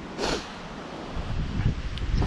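Wind buffeting the camera microphone through its foam muffler, a low rumble that picks up about a second in, with a brief hiss just after the start.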